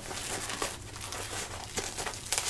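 Tyvek jacket of a removable valve wrap crinkling as gloved hands fold and press it around the fiberglass insert over a ball valve.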